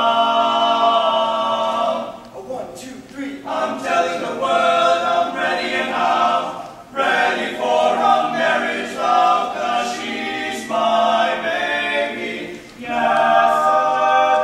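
Barbershop quartet of four male voices singing a cappella in close four-part harmony, with long held chords at the start and again near the end, and short phrases in between.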